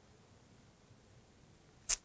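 Near silence: quiet room tone, with one brief, sharp breath noise from the speaker near the end, just before he speaks again.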